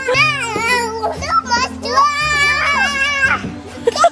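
Toddlers squealing and shrieking playfully in high voices, over background music with low, held bass notes.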